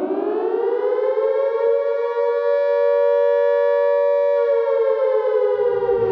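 Siren sound effect in the break of a crunkcore song: a wail that rises in pitch over the first second or so, holds steady, then sags slightly near the end. A low bass comes in just before the end.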